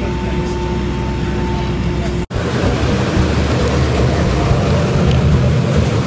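Steady airliner cabin hum with two steady whining tones while the plane taxis. After a sudden cut about two seconds in, a louder, rougher low rumble of the cabin follows, with indistinct voices.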